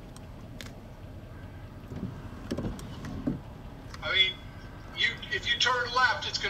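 Steady low rumble inside a stopped car, with a few faint clicks in the first second, and voices again from about four seconds in.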